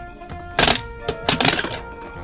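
Plastic toy candy machine worked by hand: two short bursts of clicking and clattering, about half a second in and again around a second and a half, as the knob turns the dispensing mechanism and candy balls drop into the chute. Background music plays underneath.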